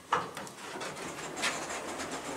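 Traction elevator car setting off: a sharp knock, then a steady running hum and rush that grows gradually louder as the car picks up speed.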